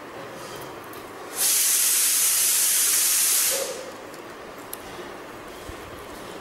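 A loud, steady hiss lasting about two seconds that starts and stops abruptly, a little over a second in.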